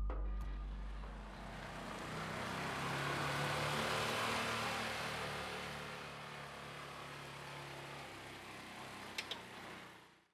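A car passing by, its engine and tyre noise swelling to a peak a few seconds in, then slowly fading. Two short sharp clicks near the end.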